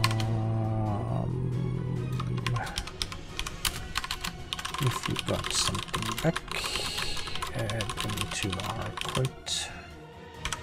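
Typing on a computer keyboard in quick, irregular keystrokes. Background music runs underneath, with low held notes in the first couple of seconds.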